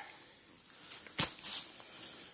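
Faint rustling on dry fallen leaves with one sharp crackle just over a second in, the sound of someone moving and crouching on a leaf-covered forest floor.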